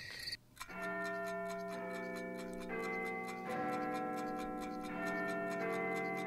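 A clock ticking evenly over sustained synthesizer chords. The chords shift a few times, forming the ident for a segment.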